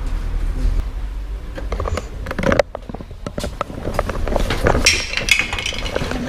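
Handling noise from a small action camera being picked up and carried: a run of irregular clicks and knocks with a brief rustle near the end, over a low rumble at the start.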